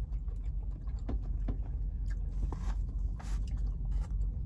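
Eating sounds: spoons clicking and scraping against bowls and someone chewing, with a few short bursts of noise, over a steady low hum.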